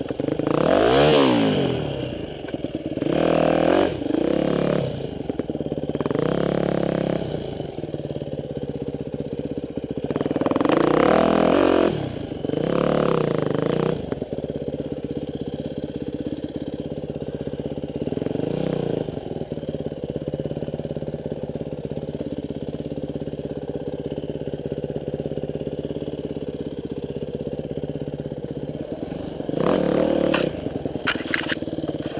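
Enduro dirt bike engine being ridden, revving up and down with the throttle several times in the first dozen seconds, then running more steadily under part throttle.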